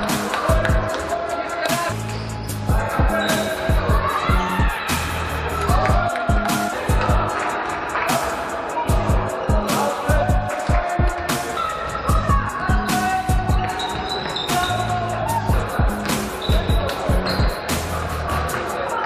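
Background music with a steady, driving beat and a melody.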